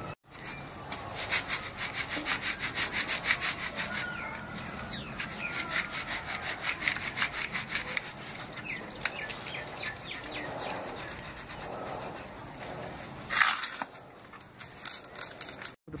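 Rhythmic scraping and rubbing strokes, several a second, as hands scour inside a plastic bowl. The strokes thin out after about eight seconds, with one short louder scrape near the end.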